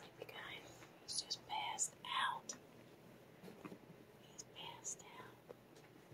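A woman whispering softly, two short runs of breathy whispered words: one about a second in and another near the five-second mark.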